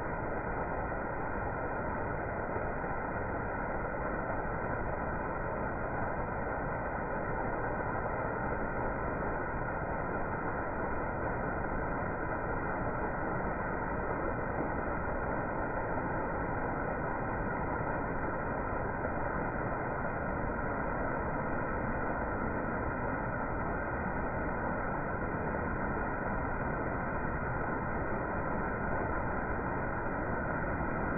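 Steady rushing of water flowing over a small weir, with a waterfall further upstream.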